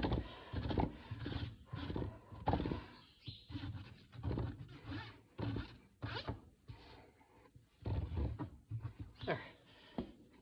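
Flat hoof rasp scraping across a horse's hoof on a hoof stand in rough strokes, about two a second, with a short pause about seven seconds in: the finishing rasp of a hoof trim.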